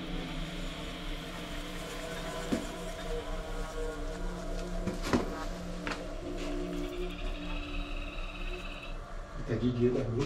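Steady, low droning tones held for seconds at a time, like an ambient music bed, with a few sharp clicks about two and a half, five and six seconds in.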